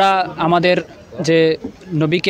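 A man speaking Bengali in an interview, in short phrases with brief gaps.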